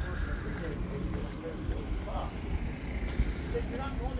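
Outdoor ambience: a steady low rumble with faint background voices talking.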